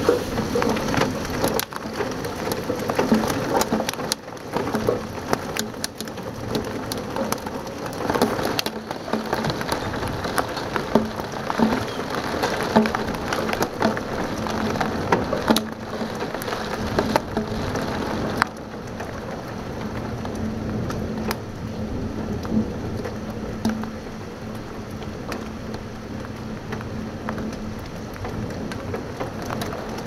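Heavy rain pelting a window, with many sharp taps of drops against the glass over a dense steady patter. It eases a little about two-thirds of the way through.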